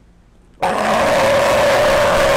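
Adult male California sea lion giving one long, loud call on cue from his trainer. It starts about half a second in and holds steady for about two seconds.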